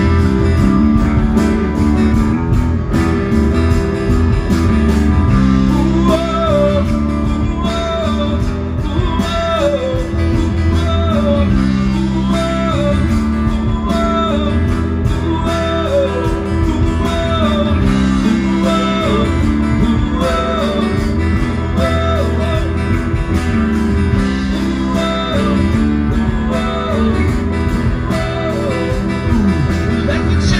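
Live band playing a song on amplified guitars, bass and drums, with strummed acoustic guitar under the band. From about six seconds in, a lead line repeats a short sliding phrase roughly once a second.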